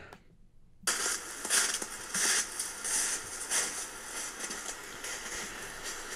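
Footsteps crunching in snow, several steps roughly half a second apart, starting about a second in over the steady hiss of a trail camera's microphone.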